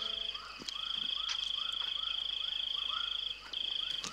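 Outdoor bush ambience: a steady, high, finely pulsing insect-like trill that breaks off briefly near the end, under short arched animal calls repeating about three times a second.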